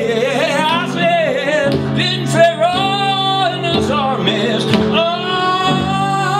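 Singing on long held notes with wide vibrato, over a steady low accompaniment and occasional hand-drum strokes.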